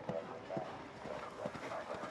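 Horse cantering on a sand arena, its hoofbeats dull thuds about twice a second, with people talking faintly in the background.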